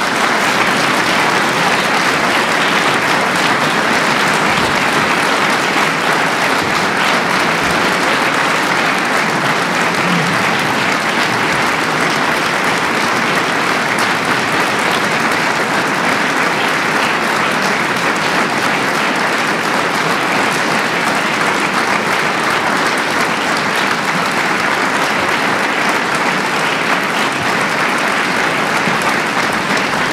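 A concert audience applauding, a dense, steady clapping at an even level.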